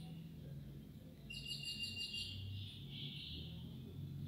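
Faint bird chirping: a quick, high-pitched trill of repeated notes about a second in, lasting about a second, followed by softer chirping.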